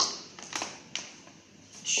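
Three short clicks and taps from a power cord plug being handled and pushed into the back of an ECG machine.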